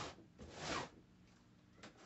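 Utility knife slitting the packing tape on a cardboard box: two short, zipper-like strokes, the second longer, about half a second in.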